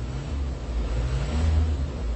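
Low rumble of a vehicle engine in the background, growing a little louder about a second and a half in.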